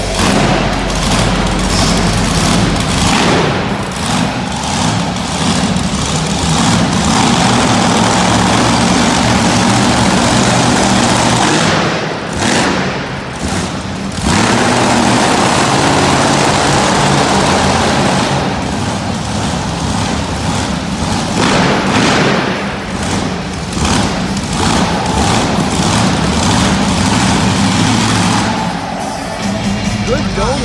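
A monster truck's engine running loud and revving on an indoor arena floor, with arena music playing over it. The engine's sound drops back briefly a few times.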